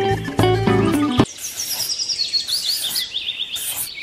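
Acoustic guitar music that stops abruptly about a second in, followed by a bird's rapid run of high, downward-slurred chirps that lasts until near the end.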